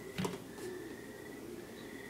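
Quiet room tone with one brief soft bump just after the start.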